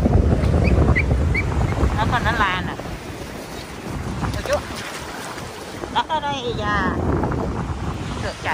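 Strong wind buffeting the microphone over ocean surf, loudest in the first three seconds. Two short, high, wavering vocal calls cut through it, about two seconds in and again about six seconds in.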